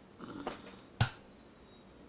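A single sharp click about a second in, after a faint, brief murmur.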